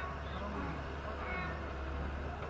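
Low, steady running of the excavator's diesel engine heard from a distance, with faint voices calling briefly over it.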